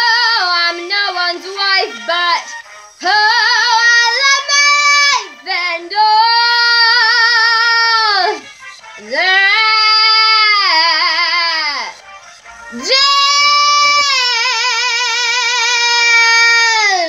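A young girl singing unaccompanied, a few short notes and then long held notes with wide vibrato on the drawn-out closing phrase of the song.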